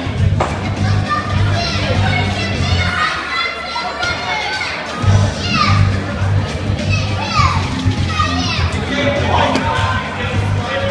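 Entrance music with a steady bass beat playing through the hall PA, mixed with crowd noise and children's voices shouting and calling out. The beat drops out for about two seconds midway and then comes back.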